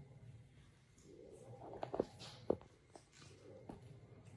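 Faint handling of a folded paper fortune teller: soft rustles and a few small sharp clicks, the clearest two about two seconds in, over a low room hum.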